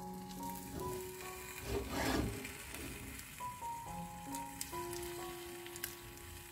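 Background music with held notes, and about two seconds in a brief crackling rustle as a sheet of lavash flatbread is folded over and pressed down in a frying pan, with a few faint clicks near the end.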